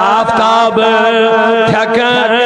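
A man singing a Kashmiri naat in long held notes with a wavering vibrato, over a steady low drone.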